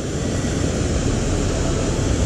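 Steady rush of river water pouring through the gates of a lock, with an uneven low rumble beneath it.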